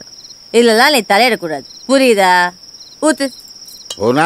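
Crickets chirping in a steady high trill that runs under the dialogue, part of the film's night ambience.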